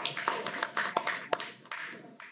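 Audience applauding, the clapping thinning to a few scattered claps and fading out near the end.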